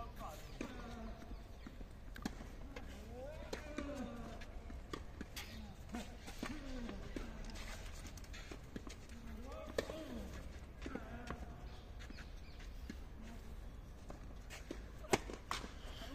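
Faint voices talking in the distance, with a few sharp knocks of a tennis racket striking the ball, the loudest near the end, over a low steady rumble.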